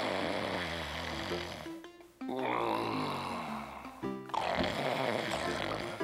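A cartoon character snoring in three long drawn-out snores of about two seconds each, over background music.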